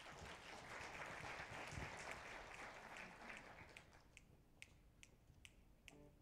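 Faint applause that dies away, then a count-off of five sharp, even clicks, a little over two a second, setting the tempo for a jazz ensemble about to play.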